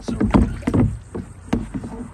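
Water sloshing and splashing in a plastic tote as a pump's suction disc and garden hose are lowered into it, with a sharp knock about one and a half seconds in.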